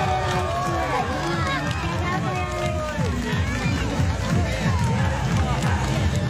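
A person's voice over background music; no other distinct sound stands out.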